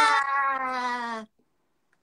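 A woman's long, drawn-out excited cry of 'waaa', sliding down in pitch and breaking off a little over a second in.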